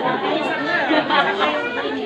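Several voices talking over one another, children among them: noisy chatter.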